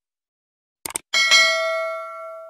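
Two quick clicks, then a bright bell chime at about a second that rings on and slowly fades. These are the sound effects of a subscribe button being clicked and its notification bell ringing.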